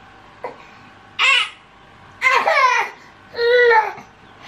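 A baby girl about a year old gives three short, high-pitched vocal sounds, part babble and part whimper, while being given a liquid supplement from a cup.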